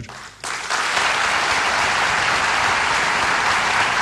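Audience applauding: steady clapping from a large crowd that starts about half a second in.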